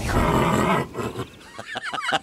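A loud, rough animal call lasting under a second near the start, then fading, with a few short gliding calls near the end.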